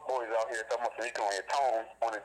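A person talking continuously.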